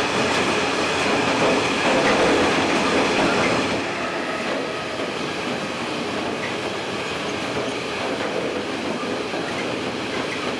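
Long freight train of covered hopper wagons rolling past, with a steady rumble and clatter of steel wheels on the rails. It gets a little quieter and duller from about four seconds in.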